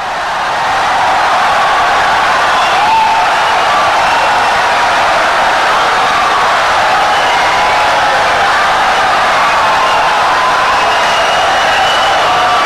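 Loud audience applause and cheering, swelling in over the first second and then holding steady.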